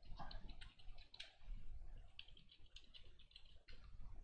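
Computer keyboard typing: a run of light, irregular key clicks, several a second.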